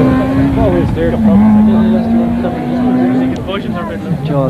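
Rally car engine running hard as the car drives away along the stage. Its note dips in pitch about a second in, holds steady again, then falls away near the end, with spectators' voices over it.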